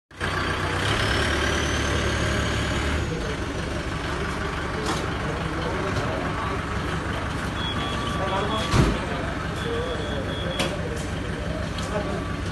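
An ambulance engine idles with a steady low hum and cuts off about three seconds in. After that come rattles and clicks as the transport incubator trolley is unloaded, with one loud clunk near nine seconds and two short high beeps around it.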